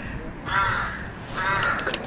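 A crow cawing twice, the calls about a second apart.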